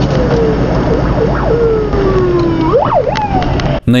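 Ambulance siren sounding, with slow falling wails broken twice by quick rising sweeps, over the steady drone of the car's engine and road noise.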